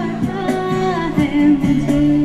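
A woman singing a melody into a microphone, accompanied by acoustic guitar and a hand-played cajón keeping a steady beat.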